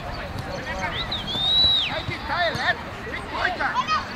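Shouting from players and spectators at a youth football match, with a single shrill whistle about a second in that holds for nearly a second.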